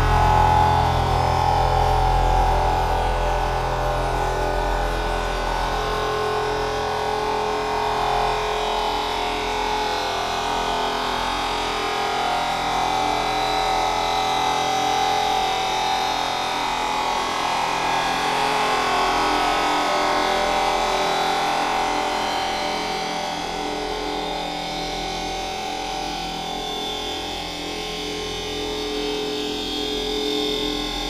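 Experimental noise music: dense layered drones and hiss that run on without a beat. A heavy low rumble thins out about eight seconds in.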